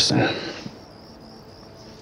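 The last word of a man's line, then faint background ambience with a steady high-pitched chirring.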